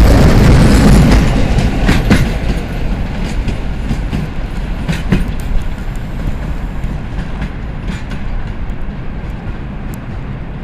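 Freight train of cement hopper wagons rolling past close by, then moving away: a loud rumble of wheels on rail that drops off after about a second, with a few sharp clacks over the rail joints as the last wagon recedes.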